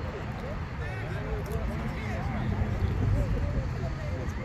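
Indistinct voices of players and spectators talking at a distance over a steady low rumble.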